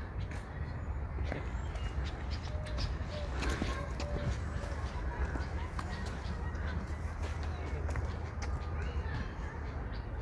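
Outdoor park ambience: a steady low rumble with faint scattered clicks, faint distant voices and an occasional bird chirp.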